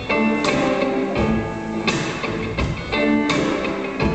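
Live rock band playing an instrumental stretch between vocal lines: guitar, keyboards, bass and drums together.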